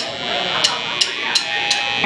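Electric guitar amplifiers buzzing with a steady hum between songs, while a drummer clicks the sticks four times, evenly and a little under three a second, to count the band in.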